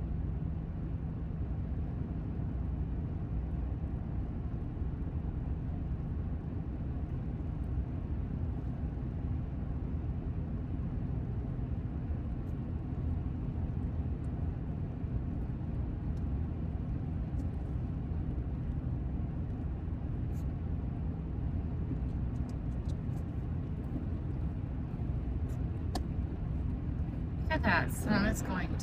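Steady low road and engine noise inside a car's cabin while driving at highway speed.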